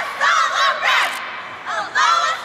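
Cheerleading squad shouting a cheer together in a string of loud, high-pitched shouted calls.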